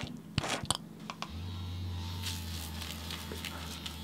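A few short clicks from a cleanser pump dispensing onto a Foreo Luna mini 2 facial cleansing brush, then, about a second and a half in, the brush switches on with a steady low buzz from its vibrating motor.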